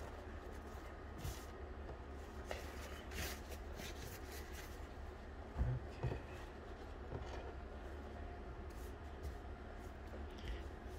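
A blue shop towel being unfolded and spread by hand on a wooden workbench: soft rustling and light handling noises, with a couple of light knocks about halfway through, over a low steady room hum.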